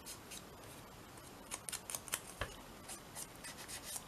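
Foam finger dauber rubbed in short strokes along the edge of a paper strip to ink it, a quiet run of scratchy scuffs. One soft knock about halfway through.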